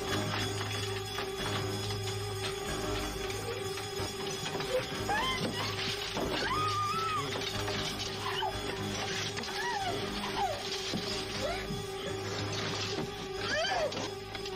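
Suspense film score: a sustained low drone and a steady held tone, with short, wavering, rising-and-falling whimpers from a frightened woman coming in from about five seconds in.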